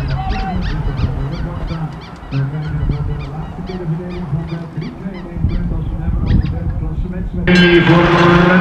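Background music with a stepping bass line under repeated short, high, honk-like calls. About seven seconds in, a loud, bright, rapidly struck hand bell starts ringing, the bell on the jury wagon that signals a premium sprint.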